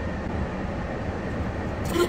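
Steady low rumble and hiss of a car's interior.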